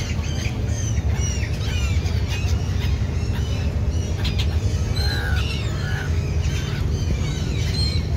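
A flock of gulls calling over and over, many short squawking calls overlapping as they circle for food held out by hand, over a steady low rumble.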